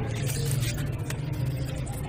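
Steady low background hum with an even haze of noise, broken by a few faint clicks.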